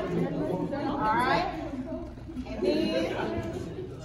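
Indistinct talking and chatter from several people in a large hall, no words clear.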